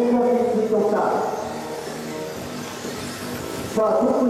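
A man's voice commentating in a reverberant hall, the kind of race announcing heard over a public-address system. It drops back for a couple of seconds in the middle and comes back loud near the end.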